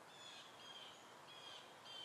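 Faint bird calls: one short, clear note repeated four times, about every half second.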